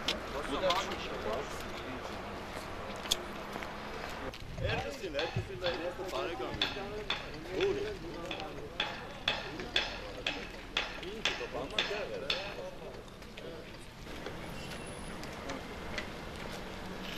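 People's voices talking, with a run of short, crisp clicks or crunching steps about two a second through the middle.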